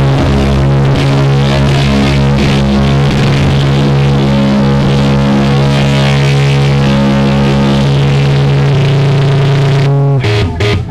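Hardcore punk band playing live at full volume: distorted electric guitar and bass hold a long sustained chord that changes pitch about a second before the end, then drop out.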